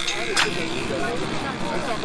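Indistinct voices over the steady running noise of a moving car, with one short click about half a second in.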